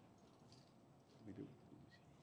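Near silence: room tone in a large hall, with a brief faint murmur of a voice about halfway through.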